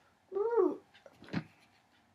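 One meow-like call, about half a second long, rising then falling in pitch, followed a little later by a shorter, sharper vocal sound.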